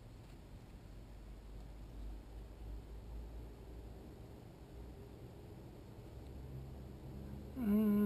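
Quiet low rumble with faint scattered noise; a man's voice starts near the end.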